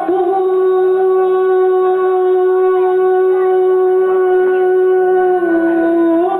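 A woman singer holding one long note of an Azerbaijani song into a microphone, steady for about five seconds, then dipping slightly in pitch near the end, with music behind her.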